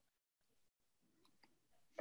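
Near silence: a pause between speakers in a video call, with only faint room tone.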